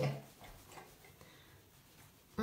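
Faint rubbing of a cloth on a ceramic toilet cistern lid, scrubbing off sticky label residue with petrol.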